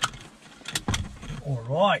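Car seatbelts being pulled across and buckled in, with a few sharp clicks of the belt latches in the first second.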